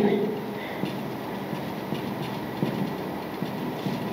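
Marker pen writing on a whiteboard: faint scratching strokes over a steady hum of room noise.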